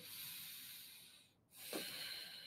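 Faint breathing through the nose as the pose is held: one breath fades out over the first second, and another begins near the end.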